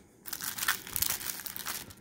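Cellophane shrink wrap on a CD jewel case crinkling as it is pulled and peeled loose by hand, a dense rapid crackle that starts a moment in.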